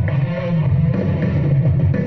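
Instrumental passage of a pop song's backing music, guitar over a heavy, steady bass, with no voice.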